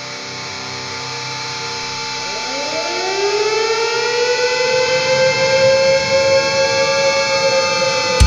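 Electronic intro of an industrial metal track: a held synth drone that swells steadily louder. From about two seconds in, a tone with several overtones slides up in pitch, then levels off and holds.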